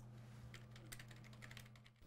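Faint typing on a computer keyboard: a run of quick, light key clicks over a low steady hum.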